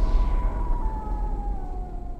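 Horror title-card sound design: a deep rumble under a long, slowly falling whine that fades near the end.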